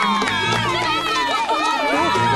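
A crowd of villagers cheering and calling out at once, over background music.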